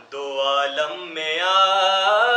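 A man's solo voice reciting an Urdu salam, a melodic devotional chant. After a brief break for breath at the start, the voice comes back in and glides up into a long held note.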